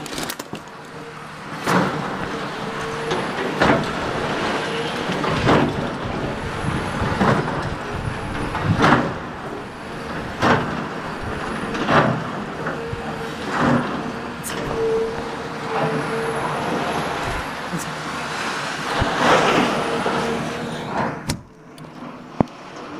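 Caterpillar excavator demolishing a building: repeated crashes and crunches of breaking and falling debris every second or two, over the steady hum of its diesel engine. The din starts a second or two in and drops away just before the end.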